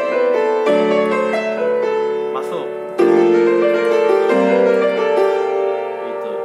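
Yamaha piano played with both hands: sustained left-hand chords with right-hand melody notes moving above them in a jazz-gospel lick. New chords are struck about a second in, at three seconds, and twice more near the end.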